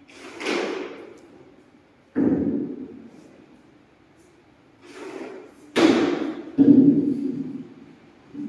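A series of five loud thumps or bangs, each fading over about a second, the last three coming close together.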